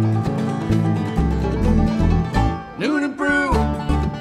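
Bluegrass band playing a song: plucked banjo, guitar and dobro over an upright bass line, with a short bending, sliding phrase about three seconds in.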